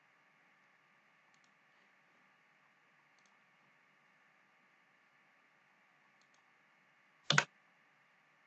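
A few faint computer mouse clicks over a low steady hiss, then one sharp, much louder click, heard as a quick press and release, near the end.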